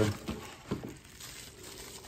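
Faint handling noise: bubble wrap and cardboard rustling as a wrapped motor is lifted out of its box, with a couple of light clicks in the first second.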